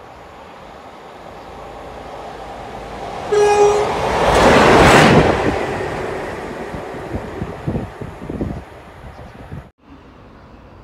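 A train approaching and passing at speed through a station: its sound builds, a short single-note horn blast sounds about three seconds in, the loud rush of the passing train peaks a second later, then wheels clatter over rail joints as it draws away. The sound cuts off abruptly just before the end.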